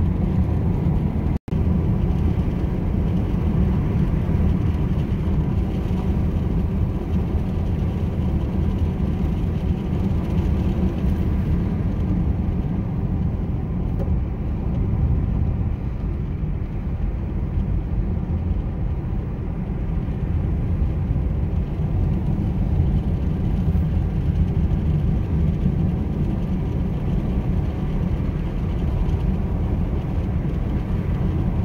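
Steady low rumble of tyre and engine noise inside a car's cabin while driving, cut by a brief dropout about a second and a half in.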